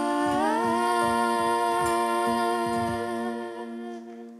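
Female voices humming a wordless, sustained harmony in a slow acoustic ballad. About half a second in, one voice glides up to a higher held note, and the held notes fade near the end.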